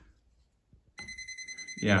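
Non-contact voltage tester pen beeping, a high rapid beeping that starts suddenly about a second in. It signals live voltage now that the circuit has been switched on.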